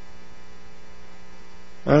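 Steady electrical mains hum on the recording, a low buzz with a fixed pitch. A man's voice starts right at the end.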